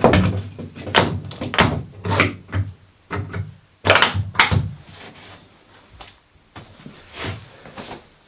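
A run of knocks and clunks on a wooden workbench as a clamp is dropped into a freshly drilled bench dog hole and tightened down on a birch plywood block, the loudest knocks about four seconds in, then a few softer knocks as a drill is set down on the bench.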